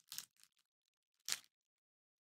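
Two brief crinkles of a pin's cardboard backing card being handled, about a second apart.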